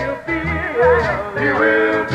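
Recorded male gospel vocal group singing. A lead voice bends through a quick melismatic run about a second in, over low bass notes about twice a second.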